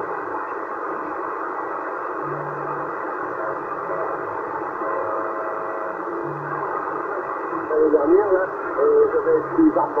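Static hiss from a Yaesu transceiver's speaker as it is tuned across the 27 MHz CB band, with a faint tone briefly in the middle. About eight seconds in, a station's voice breaks through the noise, louder than the hiss.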